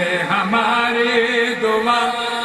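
Male voice chanting an Urdu devotional dua into a microphone, in long held notes that rise and fall slowly.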